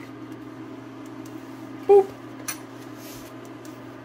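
A steady low background hum, broken about two seconds in by one short, loud "boop", followed by a faint click.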